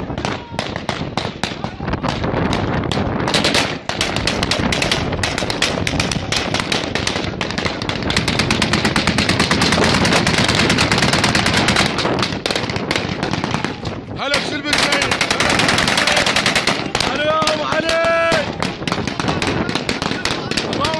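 Sustained automatic gunfire: rapid shots in long, dense bursts with brief lulls about four seconds in and about fourteen seconds in. A shouted voice cuts through the firing near the end.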